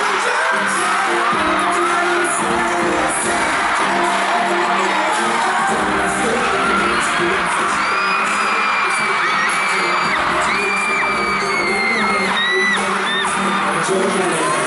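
Pop song played loud through an arena sound system during a live concert, with fans screaming over it; high, held screams stand out in the second half.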